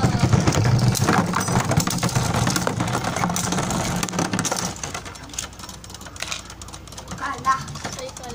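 Beyblade spinning tops whirring and clattering against each other in a plastic stadium, with many sharp clicks of collisions. The noise is loudest for the first four to five seconds, then drops to one top spinning on more quietly with occasional clicks.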